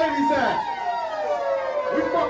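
Siren sound effect: a tone with several stacked pitches holds steady, then slides slowly down in pitch through the second half.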